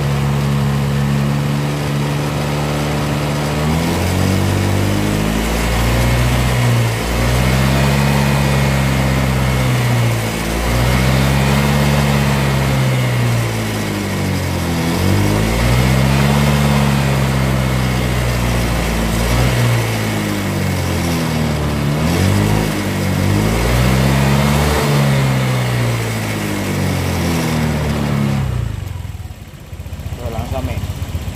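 Honda Vario 125 scooter's single-cylinder four-stroke engine idling, then revved up and let back down repeatedly, about six or seven times, each rise and fall taking a few seconds; the engine note falls away near the end. The revving is a fuel-pressure check for intermittent hesitation, which the mechanic suspects comes from a faulty fuel pump.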